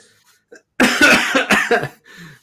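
A man's loud burst of laughter, a quick run of breathy pulses lasting about a second, starting nearly a second in.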